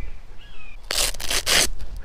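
A harsh, rasping rustle of fabric and straps lasting just under a second, as a quilted dog lift harness is pulled out and unfolded by hand. A faint high, thin call sounds a few times underneath.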